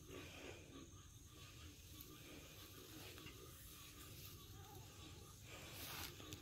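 Near silence: faint night-time outdoor ambience with a faint, steady buzz of insects, and a brief soft hiss near the end.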